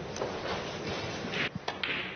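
Steady hushed hall ambience between shots in a snooker arena, with a few short knocks near the end.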